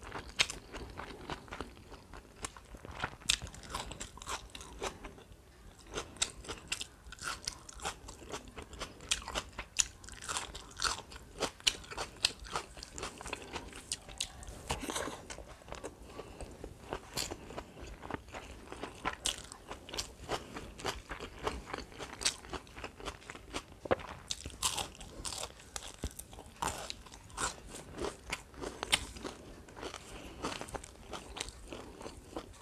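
Close-miked chewing of food eaten by hand, with frequent sharp, irregular crunches and mouth clicks.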